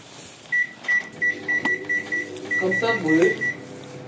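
Microwave oven's control panel beeping: a quick run of short, high electronic beeps at one pitch, about five a second with a brief break in the middle, as the oven is set, over a steady low hum.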